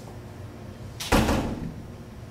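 A single sharp bang about a second in, dying away over about half a second.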